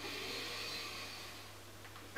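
A man drawing a deep breath in, a soft hiss of air that fades away over about a second and a half.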